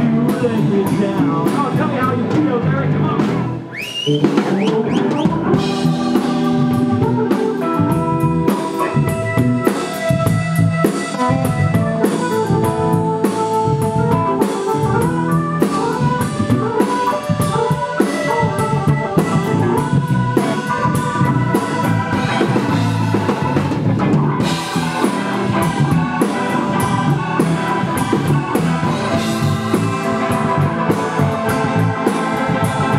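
Live blues band playing an instrumental passage on drum kit, electric bass guitar and a Nord Electro 4 keyboard, with the keyboard carrying the lead. The music drops back briefly about three and a half seconds in, then carries on steadily.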